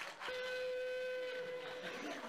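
Two-finger whistle blown as one long, steady, fairly low-pitched note like a steam whistle, starting a moment in and breaking off near the end.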